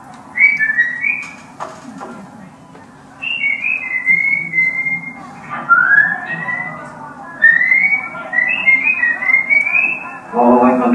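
Someone whistling a melody in short gliding phrases, with a brief pause a few seconds in, over a faint low hum. There is a short knock about a second and a half in.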